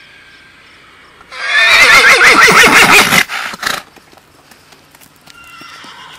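Arabian mare whinnying loudly: one shrill, quavering call of about two seconds starting a second in, followed by a few short sharp sounds. A fainter call is heard near the end.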